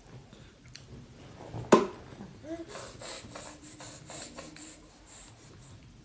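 A metal spoon clicks once sharply against a small glass bowl, then scrapes around inside it in a quick run of short strokes, scooping up split pea soup.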